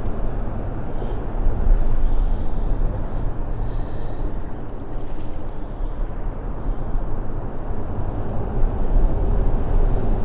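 Steady low rumble of road traffic on the overpass directly above, without breaks or sharp sounds.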